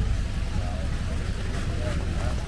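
Steady low rumble of vehicle engines and street traffic, with faint voices of people nearby.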